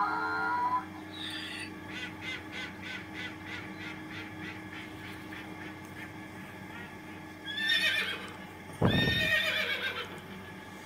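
Horse whinnying, loudest about nine seconds in with a call before it at about seven and a half seconds. Before that there is a quieter run of short animal calls, repeated two or three times a second.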